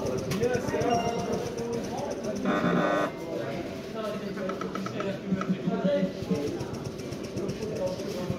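Indistinct talking in a room, with a brief electronic tone about two and a half seconds in.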